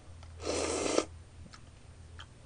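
A person slurping noodles off chopsticks: one noisy suck lasting about half a second, just after the start.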